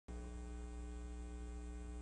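Steady electrical mains hum on the audio feed, an unchanging low hum with a buzzy edge that starts a moment in.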